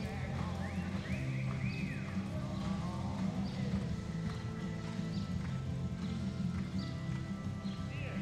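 Background music with a steady low beat, along with a horse's hoofbeats as it lopes on soft arena dirt.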